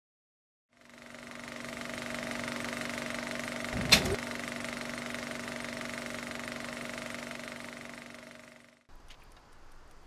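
Steady mechanical whirr and rapid clatter of a running film projector, with one sharp click about four seconds in; it stops abruptly near the end.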